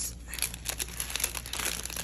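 Clear plastic packaging crinkling as it is pulled open by hand, a dense run of small crackles.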